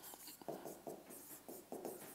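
Marker writing on a whiteboard: a run of short, faint strokes as letters are written.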